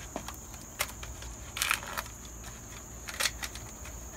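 Dried luffa gourd skin being peeled off by hand, giving three short, dry crackles about a second apart, the loudest near the middle.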